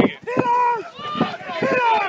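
People shouting close by: several drawn-out, high-pitched calls one after another, the pitch rising and falling, as at a rugby match.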